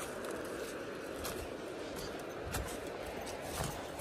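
A few soft scuffs and crunches of footsteps on a dry, leaf-strewn dirt path going downhill, over a steady outdoor hiss.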